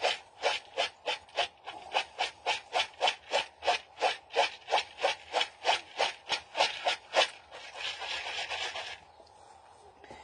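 Hulled coffee beans being winnowed by hand in a plastic bowl, tossed and blown on to clear the husk: a rhythmic swishing about four times a second for some seven seconds, then a steadier rush lasting about a second and a half.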